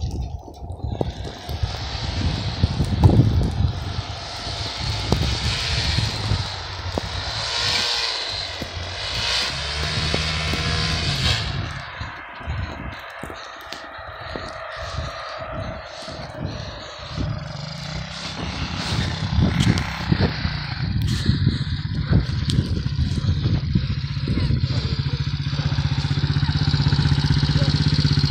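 125cc ATV engine running out in the distance, its pitch rising and falling as the throttle is worked; in the last few seconds it runs steadily close by, at idle.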